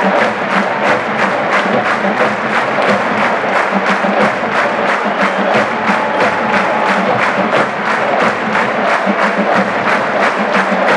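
Marching band drumline playing a fast, steady marching cadence, about three strokes a second, with sharp rim clicks over the drums.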